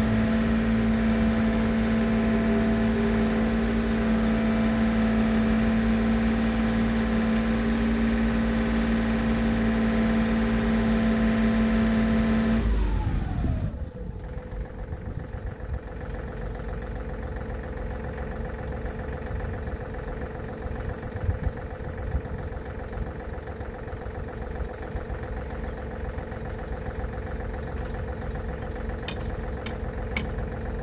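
John Deere compact tractor's diesel engine running at high revs, then throttled down about halfway through, its pitch falling over about a second, and idling lower and quieter after that. A few light knocks come near the end.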